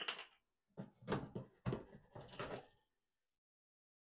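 Plastic reverse osmosis filter cartridges knocking and clattering as they are handled and pushed onto the filter manifold: a sharp knock at the start, then a few short clattering handling sounds. The sound cuts off suddenly before three seconds in.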